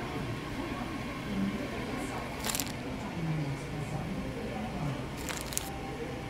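Plastic food wrapping crinkling in two short bursts, about two and a half seconds in and again near the end, as a packaged bun is handled, over a steady murmur of background voices.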